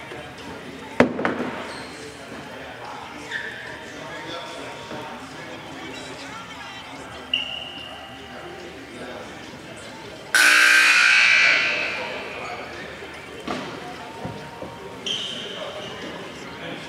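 Gymnasium scoreboard horn sounding loud for about a second and a half, about ten seconds in, the signal during a timeout, over background voices in a large hall. A single sharp bang about a second in.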